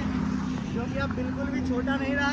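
Faint voices talking, with a steady low hum underneath.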